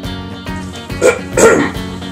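Background music with a steady beat, broken about a second in by two short, loud yelp-like bark sounds in quick succession.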